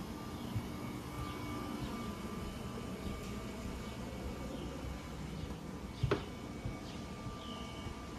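Outdoor ambience: a steady low rumble of distant noise, with a few faint bird chirps near the end and a single knock about six seconds in.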